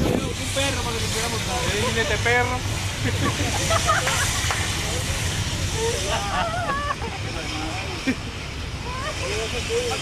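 Several people talking and calling out in short, scattered bursts over a steady low rumble and hiss.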